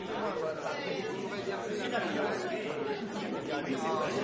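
Crowd chatter: many voices talking at once in an indistinct, steady murmur, the background of a crowded dance hall.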